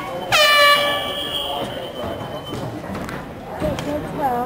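A hand-held air horn sounding one blast about two seconds long, its pitch dropping quickly at the onset and then held steady, with voices around it.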